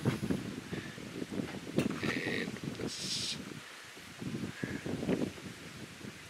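Wind gusting over the microphone, rising and falling unevenly, with a brief hissing rustle about three seconds in.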